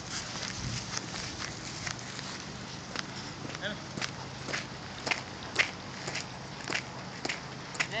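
Footsteps on gravel and dirt, short crunching steps about two a second.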